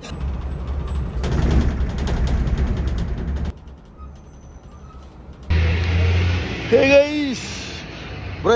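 Volvo 9600 coach on the move, its engine and road noise heard from inside the driver's cab as a steady low rumble. The level drops abruptly about three and a half seconds in and jumps back up about two seconds later; a short voice-like rising-and-falling sound comes near the end.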